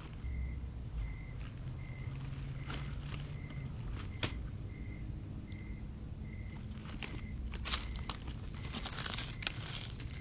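Skunk walking over dry leaves and debris: scattered crackles and rustles, busiest a couple of seconds before the end as it passes close.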